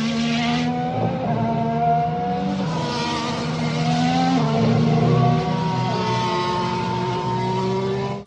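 Racing car engines running at speed, several engine notes shifting up and down in pitch, cutting off suddenly at the end.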